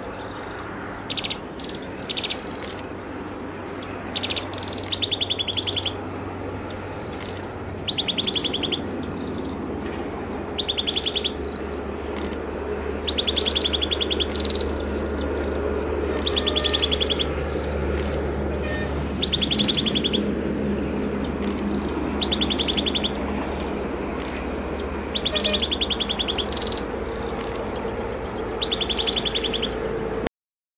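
Common tailorbird singing: a few short single notes at first, then loud, high phrases of rapid repeated notes about every three seconds, over a steady low rumble.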